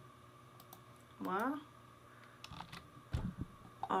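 A few light computer keyboard and mouse clicks while working at a computer, with a brief wordless voice sound about a second in and a soft low thump about three seconds in.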